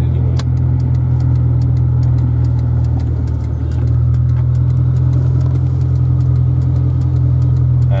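Suzuki Escudo's engine heard from inside the cabin while driving, a steady low drone with a brief dip about three and a half seconds in. Its ignition is running on an aftermarket 7Fire CDI switched to 'stroker' mode, which is meant to raise the RPM and give more power. Faint rapid ticking runs over it.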